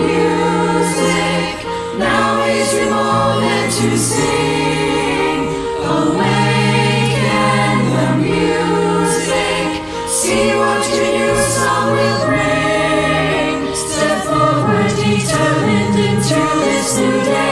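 Mixed choir of teenage and adult voices, recorded one by one and mixed together as a virtual choir, singing a choral song in harmony with long held chords and crisp 's' consonants.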